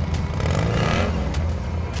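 Motor scooter engine running as the scooter rides past, a steady low drone that grows noisier about halfway through.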